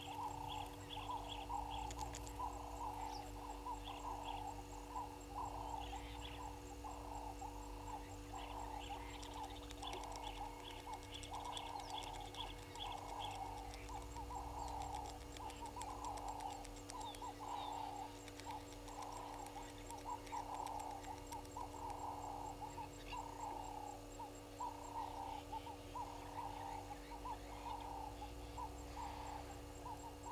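Animal calls from around a waterhole, short calls repeating about twice a second without a break, with fainter high chirps over them and a steady low hum underneath.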